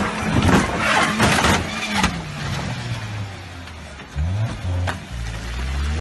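A car drives down off a flatbed tow truck's bed: loud knocks and bangs in the first two seconds as the wheels drop off the platform, then the engine running and briefly revving about four seconds in as the car drives away.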